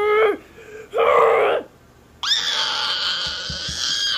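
A person's voice screaming: a high-pitched, held cry of about two seconds that starts about halfway in. Before it, a sung note ends just after the start and a short, raspy vocal burst comes about a second in.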